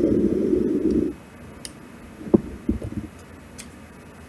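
Tarot cards being laid out and slid into place on a cloth mat: a dull rustle of sliding for about the first second, then a few light taps as the cards are set down.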